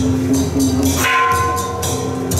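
Temple-procession percussion: cymbals struck in a steady beat over drums, with a bell-like ringing tone entering about halfway through.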